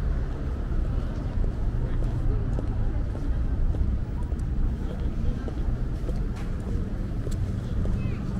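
City street ambience: a steady rumble of road traffic with the voices of passersby in the crowd.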